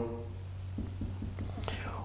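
A pause between speakers: low room tone with a steady low hum, and faint, indistinct speech murmured off-mic.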